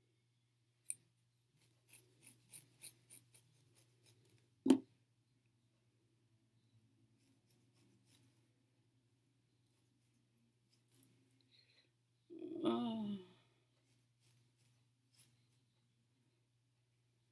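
Scissors snipping through the curly hair at the front of a lace front wig: a quick run of snips, about two or three a second, in the first few seconds, then scattered softer snips later. A louder single knock about five seconds in, and a brief voice sound a little past the middle.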